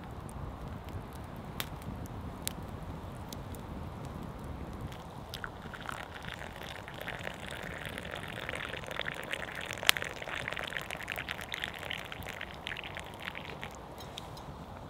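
Campfire crackling with sharp pops, then hot coffee poured into a wooden kuksa cup from about five seconds in until near the end, with one louder crack partway through the pour.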